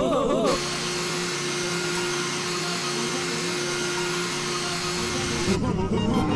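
A wavering, warbling voice breaks off about half a second in and gives way to a steady rushing noise with a single low tone held under it, which cuts off suddenly shortly before the end.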